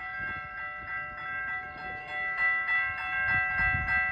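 Electronic railroad crossing bells (e-bells) ringing in a rapid, steady, repeating ding. The crossing is falsely activated by a signal malfunction on the track, and no train is present.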